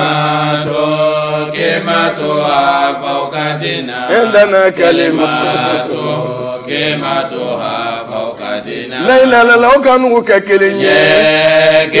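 Men chanting together in Arabic, with long, wavering held notes over a steady low note, growing louder about nine seconds in.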